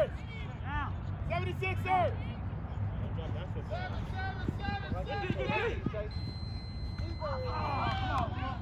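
Several people shouting and calling out across an outdoor football field, over a steady low rumble.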